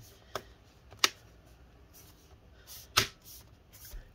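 Snap-fit plastic clips of an HP 14-dq1033cl laptop's bottom cover clicking into place as palms press the cover down: a few sharp clicks, the loudest about a second in and about three seconds in, with smaller ones after.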